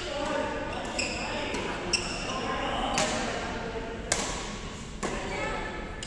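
Badminton rally: rackets striking the shuttlecock in a sharp crack about once a second, with short high squeaks from shoes on the court floor. Sounds echo in the large hall.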